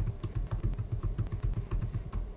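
Typing on a computer keyboard: a quick, even run of keystrokes, about eight to ten a second, as a terminal command is typed.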